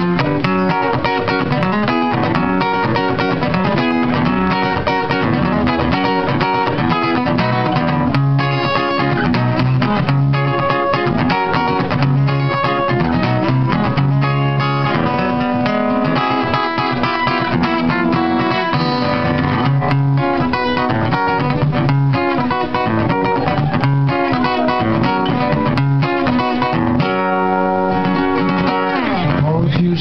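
Acoustic guitar played solo in an instrumental passage between sung lines: a steady, continuous run of strummed and picked notes with no singing.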